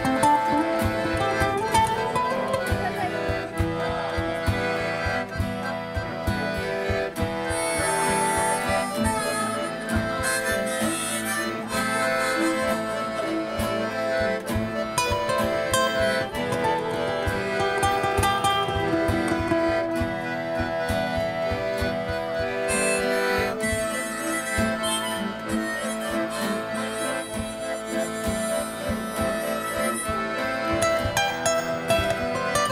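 Live acoustic instrumental folk music: a harmonica plays the lead over a strummed acoustic guitar, with a piano accordion holding chords underneath. The playing runs on without a break, with no singing.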